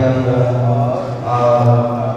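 A man's voice intoning a liturgical prayer in chant, holding long notes on a nearly steady pitch, with a short break about a second in.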